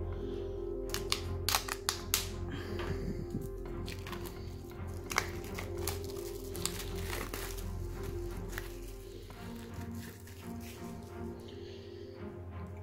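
Plastic shrink-wrap crinkling and tearing as it is pulled off a deck of playing cards: a run of irregular crackles. Quiet background music with held notes runs underneath.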